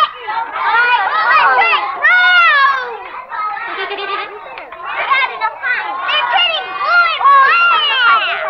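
Children's voices chattering, high-pitched and hard to make out, several talking over one another.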